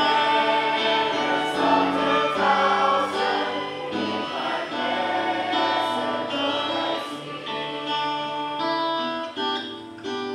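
A group of voices singing a worship song together with instrumental accompaniment, in long held notes that change every second or so.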